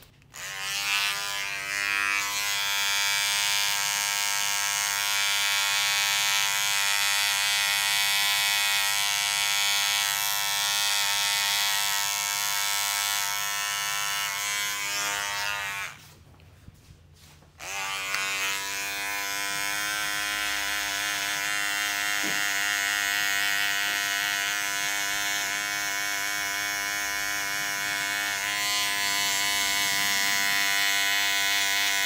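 Electric beard trimmer running with a steady hum as it trims the beard. It cuts out for about a second and a half just past the middle, then starts again.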